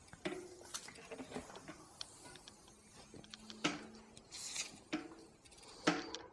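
Faint scattered clicks and rustles from a mountain-bike rear wheel being turned by hand, working tyre sealant into a fresh puncture.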